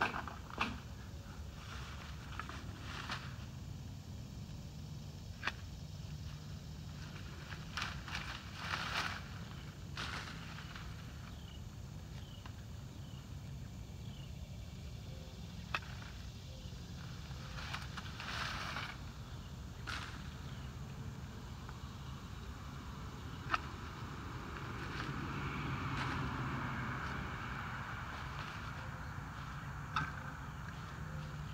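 Long-handled loppers cutting woody blackberry floricanes: sharp snips every few seconds, with rustling of canes and leaves as they are handled and pulled out, and a longer rustle near the end.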